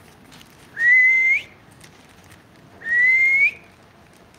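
Two whistled notes about two seconds apart, each just under a second long, holding a steady pitch and then sliding upward at the end.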